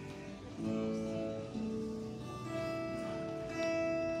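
Live worship band playing an instrumental passage between sung lines, led by acoustic guitar, with held chords changing every second or so.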